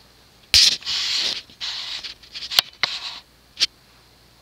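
Irregular rustling and scraping handling noise, with a sharp click about two and a half seconds in and a last short scrape near the end; no steady fan running sound stands out.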